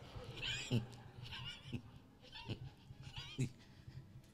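Faint, scattered laughter and short vocal reactions from a church congregation, coming in brief separate bursts about once a second.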